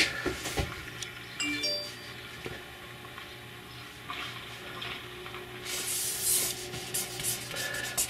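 Pen nib scratching across paper as lines are drawn, a dry rasping hiss that starts faintly about halfway through and grows stronger near the end. A few light clicks come in the first second.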